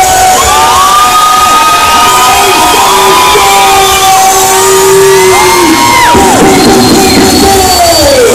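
A crowd cheering and whooping, several voices holding long, loud yells that rise and fall in pitch and overlap one another.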